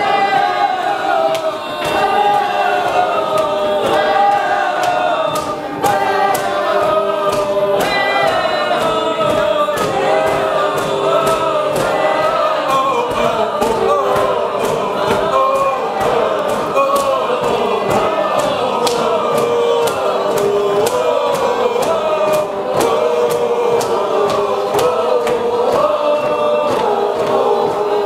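A large audience singing together without words, many voices holding and sliding between overlapping long notes in a dense, shifting improvised chord. Quick sharp clicks are scattered throughout.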